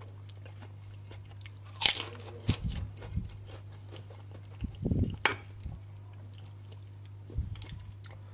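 Crisp kerupuk crackers being bitten and chewed: a few sharp crunches, the loudest about two seconds in, with softer chewing between.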